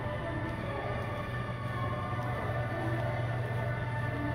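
Music playing steadily over a constant low hum.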